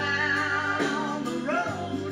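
Live country-rock band playing: electric guitar, electric bass, keyboard, drum kit and congas. A melodic lead line with bent notes rides over a steady bass that changes note about once a second.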